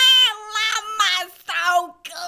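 A girl's voice making a long, high-pitched wordless squeal, then after a short break a second, shorter one near the end, meow-like in tone.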